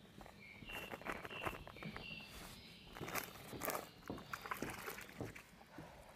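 Footsteps on dry, leaf-strewn dirt mixed with light, irregular rustles and clicks of laundry and a detergent bag being handled in plastic tubs. A few short high chirps come in the first couple of seconds.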